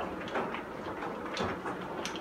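A few small clicks and scrapes as a new battery is pushed into the plastic battery holder under an instant gas water heater.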